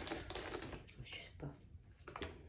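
Faint, scattered light taps and clicks of hands working at a desk, like keys being typed.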